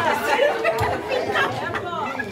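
Several people talking at once: overlapping conversational chatter in a large room.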